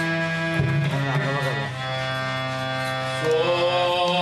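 A male voice sings a slow Carnatic melody in raga Jaganmohini, holding long notes with gliding ornaments between them. A harmonium sustains the notes underneath.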